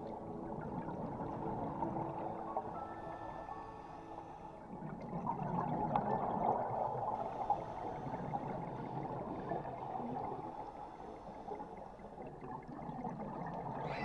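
Muffled underwater water noise picked up by a diving camera: a steady gurgling rush that swells for a couple of seconds around the middle, with faint steady tones underneath.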